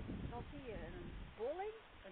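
A woman speaking Dutch, her voice rising and falling in pitch, describing a ditch and a raised bank.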